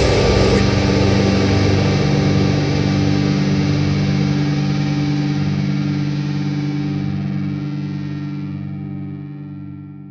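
Closing chord of a melodic death metal track on distorted electric guitar, left ringing after the band stops and slowly fading away.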